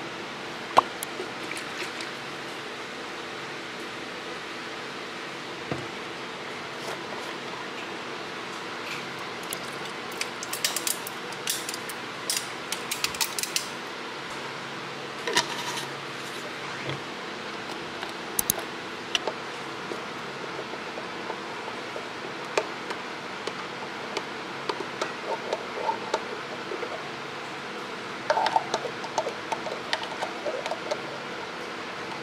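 Scattered light clicks, clinks and rustles of bottles and a plastic pouch being handled and a drink poured into a stainless steel tumbler on a stone counter, over a steady low hum. The handling noises bunch together about a third of the way in and again near the end.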